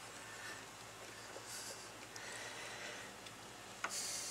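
Faint small clicks and scraping of a screwdriver turning down the small cover screws on a mechanical fuel pump, with a sharper click near the end.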